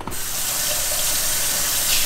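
Kitchen faucet turned on and running steadily into a stainless steel sink while hands caked in breading are rinsed under it; the water comes on abruptly at the start.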